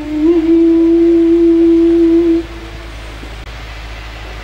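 A man's voice reciting Quran verses in a melodic chant over a microphone, holding one long steady note that ends about two and a half seconds in, followed by a pause.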